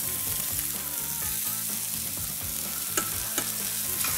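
Lamb shanks, onion and carrot sizzling steadily in a hot stainless steel sauté pan as tomato juice is poured in, with a couple of faint clicks about three seconds in.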